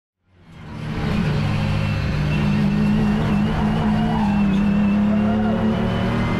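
BMW M240i Cup race car's turbocharged straight-six heard from inside the stripped cabin. It fades in over the first second, then holds a steady engine note at speed over tyre and road noise.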